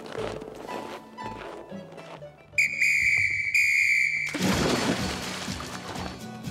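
A whistle blown twice in two steady, shrill blasts, followed by a loud splash of someone plunging through the hole in the ice into the icy water, with soft background music underneath.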